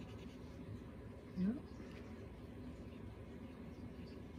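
Faint scratching of a Visconti Homo Sapiens fountain pen's medium nib moving over paper as squiggly test lines are written.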